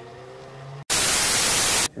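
A held music chord fades, then a brief dropout, then a loud burst of VHS-style static hiss cuts in abruptly a little under a second in and lasts about a second, stopping just before narration starts.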